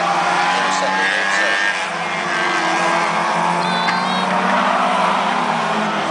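Several Euro Rod race cars' engines running around a short oval, a steady mixed engine drone that does not stop.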